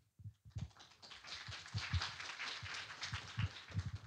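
Audience applauding with scattered hand claps. It starts about a second in and continues steadily.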